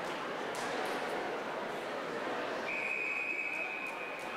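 Swim referee's long whistle: one steady high blast of about a second and a half, starting past the middle, the signal for swimmers to step up onto the starting blocks. It sounds over a steady hubbub of crowd chatter.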